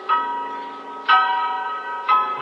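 Bell tones in the intro of a hip-hop beat: two strikes about a second apart, each ringing and fading, the second on a different pitch.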